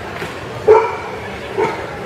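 A dog barking twice, about a second apart; the first bark is the louder.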